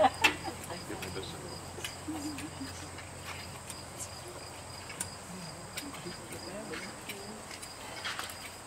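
Crickets chirring steadily in a high, even drone, with faint murmured voices and scattered soft clicks. There are a couple of sharp knocks right at the start.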